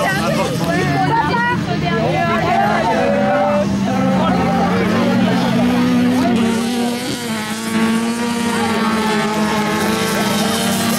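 Several autocross race cars' engines revving up and down as they race on a dirt track, their pitch rising and falling. Voices are mixed in with the engines.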